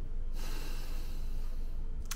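A man's long, slow audible breath out, starting about a third of a second in and lasting over a second. It is a deep breath taken to calm himself down.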